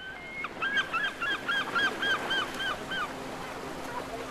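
A bird calling: a quick series of about nine repeated, arching calls, about four a second, over a steady wash of background noise. A faint low steady hum comes in near the end.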